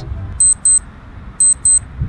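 High-pitched electronic alarm beeping in quick double beeps, two pairs about a second apart.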